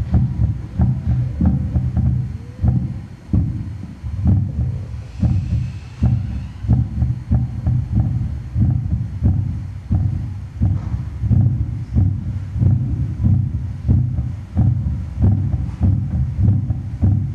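Amplified human heartbeat, picked up by a pickup on the performer's chest and played loud through the PA as a deep, steady pulse of a little under two beats a second.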